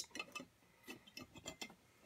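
Nearly quiet, with a few faint, irregular light metal ticks from the stainless steel pot resting on the wire pot supports of the small gas camping stove.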